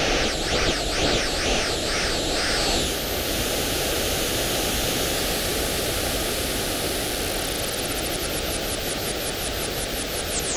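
Analogue television static: a steady hiss of white noise, with a wavering whistle over it for about the first three seconds and a fast high flutter near the end.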